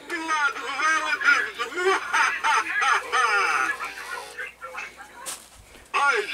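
Animated vampire Halloween figure playing its recorded voice sound through its small speaker: a high, wavering voice with quick pitch swoops that fades out after about four seconds. It is followed by a single sharp click near the end.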